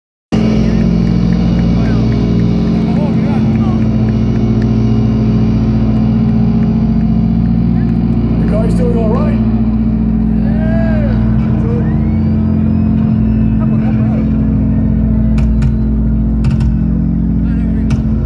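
A loud, steady droning chord from the band's amplified sound system, held with no beat, with crowd shouts and whistles rising over it about halfway through.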